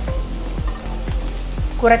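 Chopped onions, green chillies, garlic and ginger sizzling in coconut oil in a pan: a steady frying hiss.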